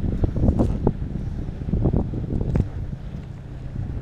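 Wind buffeting the microphone in an uneven rumble, with irregular thumps and knocks from the rod and reel being handled.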